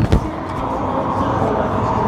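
Steady outdoor background rumble, like traffic, with a single short thump just after the start.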